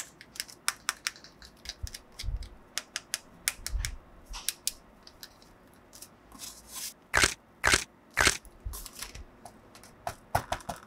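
A plastic action figure being handled and posed by hand: small clicks and taps of its plastic limbs and joints. There are two soft low knocks a few seconds in and three louder scrapes close together near the end.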